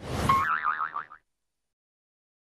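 Cartoon sound effect for the title logo: a quick swish into a warbling, springy boing whose pitch wobbles up and down several times. It cuts off suddenly a little over a second in.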